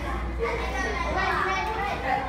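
Classroom of schoolchildren chattering, with many overlapping voices and no single speaker, over a steady low hum.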